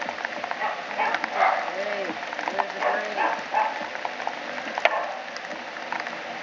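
Indistinct voices of several people talking, in short rising-and-falling phrases, with a few sharp clicks, the loudest about five seconds in.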